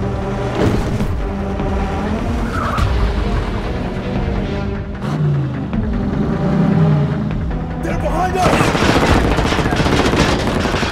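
Action-film soundtrack: a dramatic music score over vehicle engines during a car chase, turning into rapid gunfire from about eight and a half seconds in.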